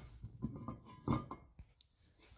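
A few faint, short knocks and clinks from the aluminium crankcase of a Ski-Doo triple engine being handled on a wooden bench.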